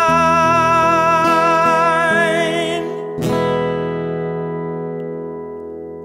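A man's voice holds the final sung note of a ballad with vibrato over acoustic guitar, stopping about three seconds in. A last strum on the acoustic guitar then rings out and slowly fades.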